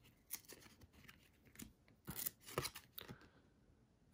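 A stack of 1997 Upper Deck Collector's Choice football cards being flipped through by hand: faint slides and flicks of card stock against card stock. The strokes are scattered, with most of them between about two and three seconds in.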